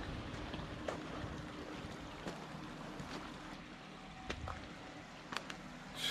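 Faint, steady outdoor hiss of wind or distant running water, with a few faint clicks and knocks scattered through it.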